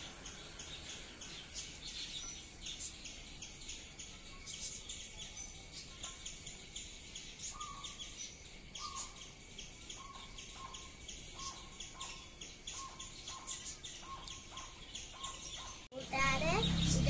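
Garden ambience of insects and birds: a steady, very high insect drone with rapid high chirping, and from about halfway in a bird repeating a short note roughly twice a second.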